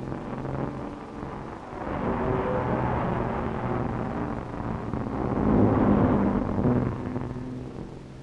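Racing speedboat at full speed: a steady engine drone with a rushing noise of spray and wind over it. The noise swells about two seconds in, is loudest around six seconds, then eases off.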